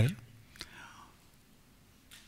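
The tail of a man's word into a lectern microphone, then a pause in speech: a faint mouth click and breath about half a second in, then near silence.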